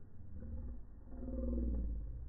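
A person's voice slowed down by slow-motion playback into a deep, drawn-out groan about a second in, over a low rumble.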